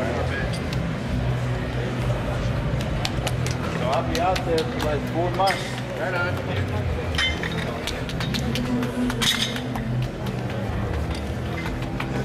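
Indistinct backstage chatter of several voices over background music, with scattered light clicks and clinks.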